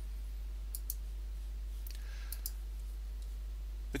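Two pairs of light computer mouse clicks, the first about a second in and the second a little past two seconds, over a steady low electrical hum.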